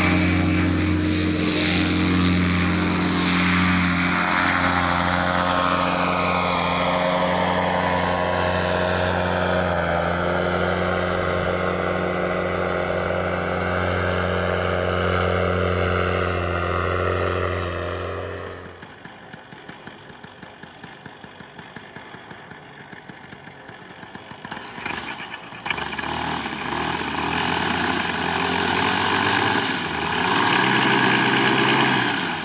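Paramotor engine and propeller running at takeoff power, its pitch sliding slowly lower as the aircraft climbs away. The sound drops abruptly about eighteen seconds in to a much quieter stretch. Near the end a paramotor engine is heard again, running low.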